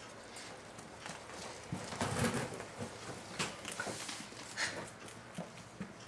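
Pet rats scuffling and scrabbling on a hard floor: irregular light taps and clicks of claws and bodies, with a louder scuffle about two seconds in. This is the jostling of rats being introduced and sorting out dominance.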